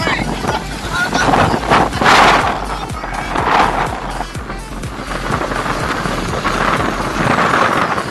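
Background music with a steady bass line over the rushing noise of small waves breaking and washing on a sandy shore, with wind on the microphone. The rush is loudest about two seconds in.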